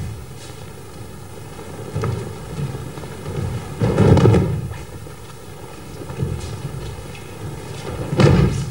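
Dull thuds of aikido students hitting the stage floor as they are thrown and take breakfalls, the loudest about four seconds in, with several lighter thumps between.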